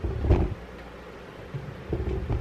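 Low rumbling handling noise on the microphone of a handheld camera as it is moved and turned: one short burst about a second long right at the start, and another near the end.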